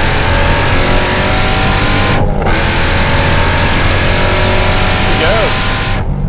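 Supercharged 6.2-litre Hemi V8 of a Hennessey HPE850 Dodge Challenger Hellcat pulling at full throttle through a rolling acceleration run to about 134 mph. It runs loud and steady with heavy wind rush, and breaks briefly about two seconds in.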